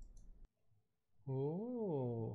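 A couple of faint clicks at the start. About a second later a man gives a drawn-out wordless vocal sound, like a hum, that rises and then falls in pitch over about a second.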